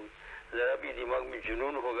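A man speaking in Urdu, giving a sermon: a short pause, then speech resumes about half a second in.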